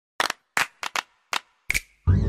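A quick, irregular run of about six or seven sharp snaps, some in close pairs, with silence between them; the last leaves a short ringing tone.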